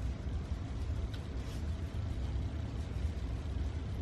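Steady low background rumble, with a faint click about a second in.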